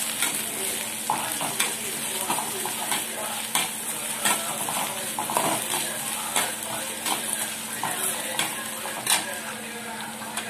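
Chopped okra sizzling in hot oil in a metal pan while a metal spoon stirs it. Frequent short scrapes and clicks of metal on the pan run over the steady hiss of the frying, with one sharper knock a little after nine seconds.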